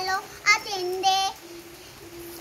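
A young girl's voice in a sing-song, chanted line with long held notes; the last note is held more quietly.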